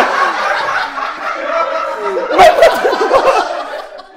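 Laughter that runs on, with a louder burst about halfway through, then dies down near the end.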